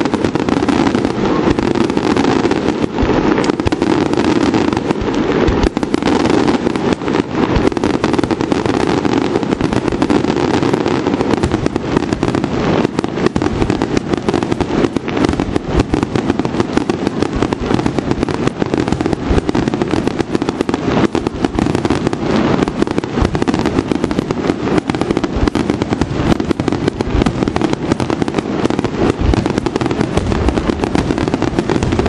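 Aerial firework shells bursting in a dense, unbroken barrage of bangs, many a second, loud throughout.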